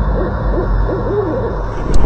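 Owl hooting: a string of short, arching hoots in quick succession over a low rumble, with one sharp click near the end.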